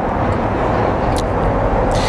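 Steady rushing noise of a passing vehicle, swelling up and holding, with a faint click about a second in.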